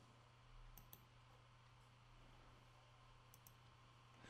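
Near silence: room tone with a few faint computer mouse clicks, a pair about a second in and one more near the end.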